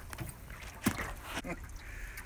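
Hooked fish splashing at the surface beside a boat, with a few short sharp splashes about a second in and again at one and a half seconds, over a low rumble of wind on the microphone.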